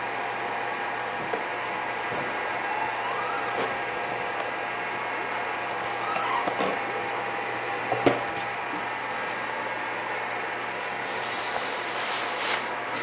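Squeegee strokes pushing ink across a screen-printing screen on a manual press, faint under a steady hum, with a short rising squeak about three seconds in and a single sharp knock about eight seconds in.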